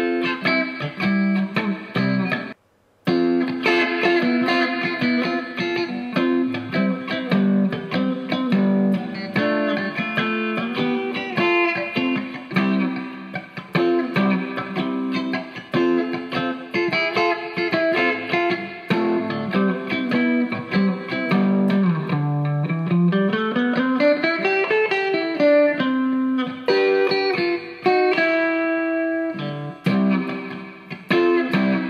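Electric guitar played alone, strummed chords mixed with single-note runs. The sound drops out briefly about three seconds in, and about two-thirds of the way through a note slides down, then up and back down the neck.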